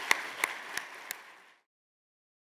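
Audience applauding, with a few sharp single claps standing out; the applause fades and cuts off about a second and a half in.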